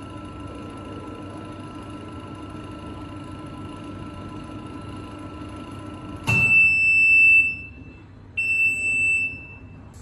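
Desktop planetary vacuum mixer running with a steady hum. About six seconds in the hum drops and the control panel's alarm buzzer sounds two long, shrill beeps of about a second each, signalling that the mixing cycle is complete.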